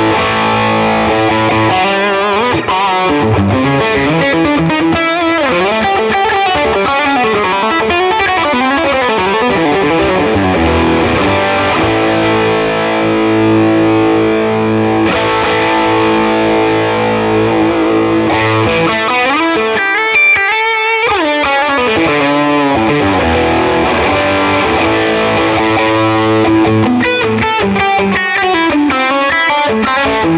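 Electric guitar played through the Neural DSP Tone King Imperial MkII amp model, its Overdrive 2 pedal set as a treble booster with the bass turned down: a lightly overdriven lead line of fast runs and held notes. A run of quick notes with heavy vibrato comes about two-thirds of the way through.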